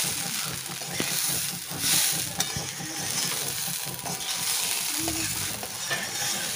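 Raw gobindobhog rice being fried in oil with whole spices in an iron kadai, stirred and tossed with a wooden spatula. The grains rustle and scrape against the pan over a light sizzle, with brief swells of hiss at the start and about two seconds in.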